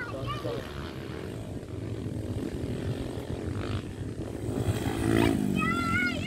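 Dirt bike engines running out on the track, a steady drone, with one engine rising and falling in pitch about five seconds in.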